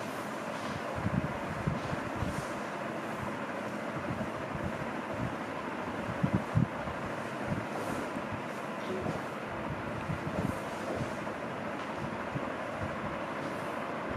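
Steady room hiss with scattered soft knocks and faint brushing, as a whiteboard is wiped with a felt duster near the start; the loudest knocks come about six to seven seconds in.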